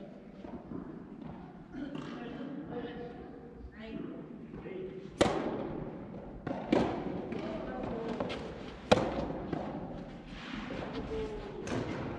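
Soft tennis rackets striking the hollow rubber ball in a rally: four sharp hits a second and a half to two seconds apart from about five seconds in, each echoing in the large indoor hall, with voices between them.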